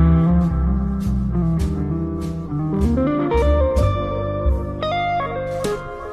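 Small jazz group playing a swing standard: a hollow-body archtop guitar carries the melody over walking upright bass, with light, regular cymbal strokes. About halfway through, the guitar line climbs in steps.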